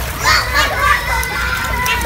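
Children's voices in a pool, with light water splashing as a child kicks a mermaid-tail monofin in shallow water.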